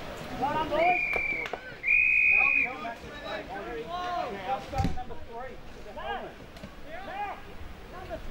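Two blasts of an umpire's whistle about a second in, the second one longer, over indistinct shouting from players and spectators. A dull thump comes near the middle.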